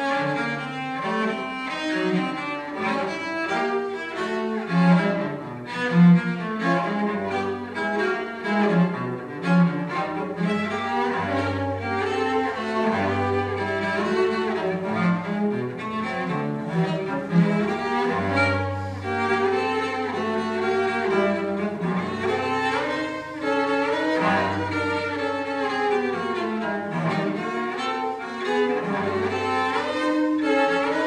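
A cello played with the bow: a continuous, moving line of notes, with held low notes sounding beneath it through much of the passage.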